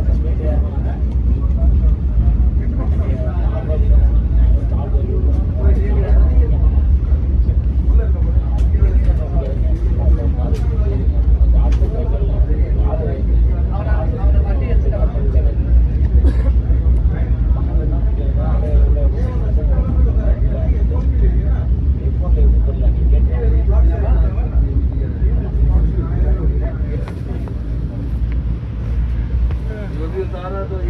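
Steady low running rumble inside a moving Vande Bharat train coach, with voices talking over it throughout.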